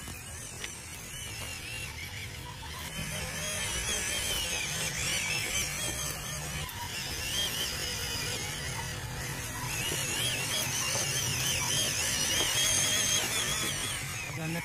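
Whine of a 1/12-scale MN99 Defender RC crawler's small electric motor and gearbox as it drives over rough ground, the pitch wavering up and down with the throttle.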